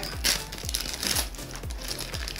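Foil trading-card pack wrapper crinkling and tearing as it is peeled open by hand, over background music with a low beat.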